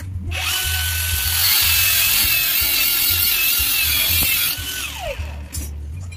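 Angle grinder started and run against a flat steel bar with a loud hiss, then switched off about four and a half seconds in, its whine falling as the disc spins down.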